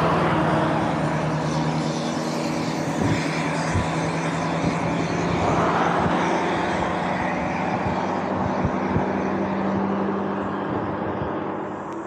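Continuous wind and tyre rush from an e-bike riding along a road, with a steady low hum under it. Two motor vehicles pass in the opposite lane, one near the start and one about six seconds in, each swelling and fading.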